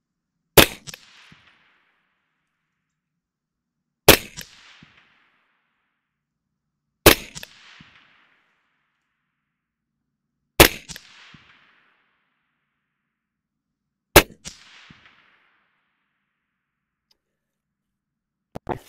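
Five suppressed 5.56 shots from an AR-15 carbine fitted with a Surefire FA556-212 suppressor, fired one at a time about three to four seconds apart, each followed by a short echo.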